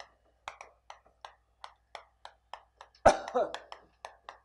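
Chalk tapping and scratching on a chalkboard as characters are written, a sharp click with each stroke at about three a second. About three seconds in, a brief cough-like vocal sound is the loudest thing.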